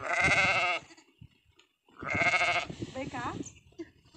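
Two loud, quavering bleats from the mixed flock of sheep and goats, each under a second long and about two seconds apart.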